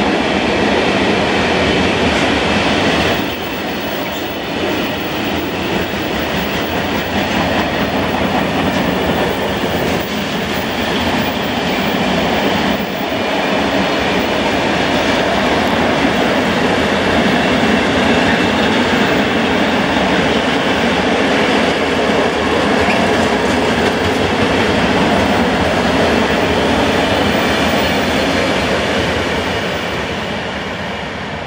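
Long freight train of open gondola wagons rolling past at close range: a steady rumble and clatter of wheels on the rails. It fades near the end as the last wagons move away.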